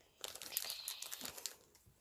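Clear plastic packaging crinkling and crackling as it is handled, for about a second and a half.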